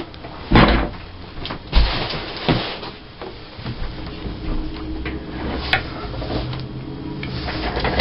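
A large ring binder being moved and set down on a tabletop, two low thuds about half a second and just under two seconds in, followed by a few clicks and softer scraping and rustling of hands and papers on the table.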